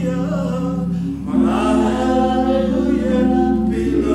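Voices singing a gospel worship song, holding long notes, with a new held phrase coming in about a second in.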